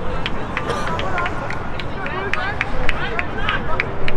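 Players' voices calling out across a football pitch during play, over a steady low rumble, with many short high chirps through the middle.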